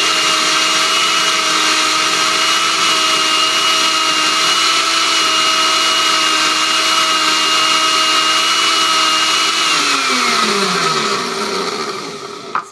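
Countertop blender motor running at a steady pitch, blending a smoothie of blackberries, milk, yogurt and applesauce. About ten seconds in it is switched off and winds down, its pitch falling as it fades.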